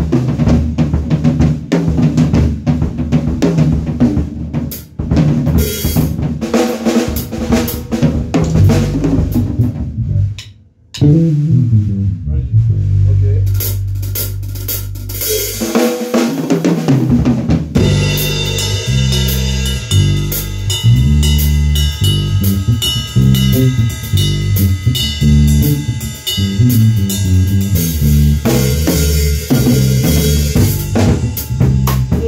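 Electric bass guitar playing a stepping bass line with a drum kit. A long low bass note is held partway through, and higher sustained tones join the music for the second half.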